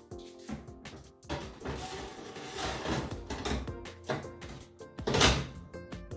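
Metal baking trays sliding along the oven's rack runners with a scraping rattle, and a loud clunk about five seconds in, over background music.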